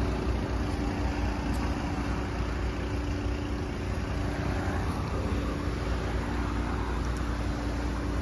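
A car engine idling steadily: an even, unchanging hum.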